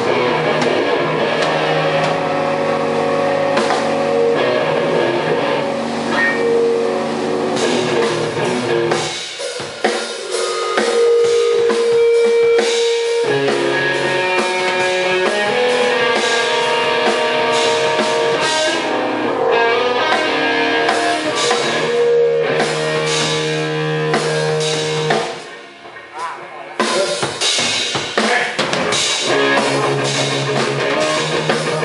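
A live rock band playing loud, with the drum kit and electric guitar upfront. The bass and kick drop out for a few seconds about a third of the way in. The music briefly falls away a few seconds before the end, then the band comes back in.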